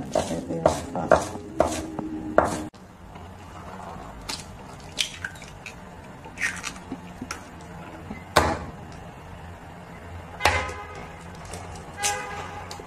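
A Chinese cleaver chopping coriander on a wooden cutting board, about two strokes a second, stopping suddenly under three seconds in. After that, eggs are knocked against the rim of a ceramic bowl and cracked into it: light clicks and two louder knocks, the second ringing briefly.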